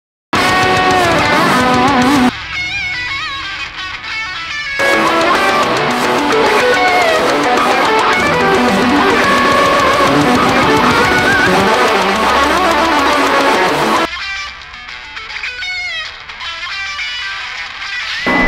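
Metal music led by an electric guitar playing a fast lead. Twice, about two seconds in and again near the end, the full band drops away and the lead guitar is left nearly alone, holding wavering bent notes.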